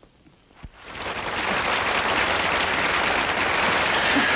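Studio audience applause, swelling up about a second in and then holding steady and loud.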